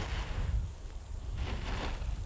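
Hands scraping and digging into the dry, loose dirt of an ant mound, giving short gritty scratching noises, once at the start and again near the end. Wind rumbles low on the microphone throughout.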